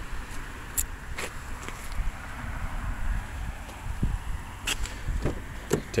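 Low steady outdoor rumble with a few light clicks and taps scattered through it, a couple about a second in and several more near the end.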